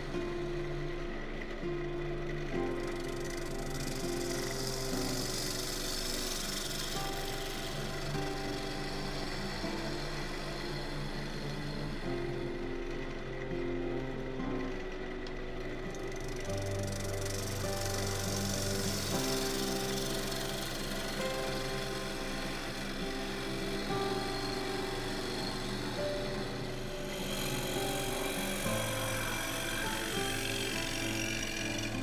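Instrumental background music with held notes changing every second or two, over the hiss of a bowl gouge cutting the spinning silver birch blank on a wood lathe, the cutting noise swelling twice.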